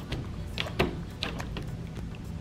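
An African bullfrog lunging onto a tabletop and snapping up a cockroach: a few short soft knocks and clicks, the loudest a little under a second in.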